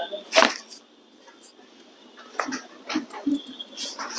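A sharp crack about half a second in, then a few fainter clicks and knocks, during hands-on chiropractic manipulation of the back.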